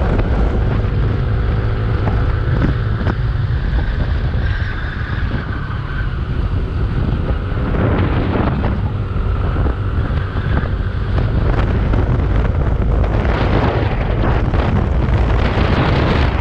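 Heavy wind buffeting on the microphone while riding a Yamaha scooter at speed, with the scooter's engine a faint steady drone underneath.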